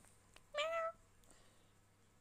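A black-and-white domestic cat gives one short meow about half a second in, its pitch lifting slightly at the start and then holding.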